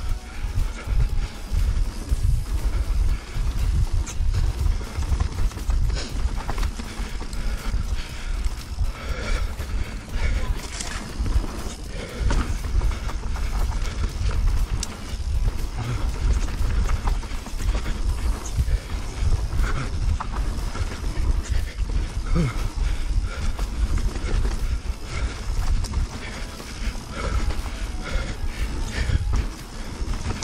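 Yeti SB150 full-suspension 29er mountain bike rolling fast down a dirt trail: constant wind buffeting on the camera microphone over tyre noise and the chatter of the bike, with scattered sharp clicks and knocks as it hits bumps. The rider breathes out heavily a little past the middle.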